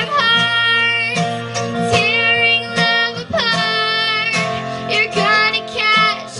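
Live acoustic string band music: a young female voice singing over strummed acoustic guitars and a bowed fiddle.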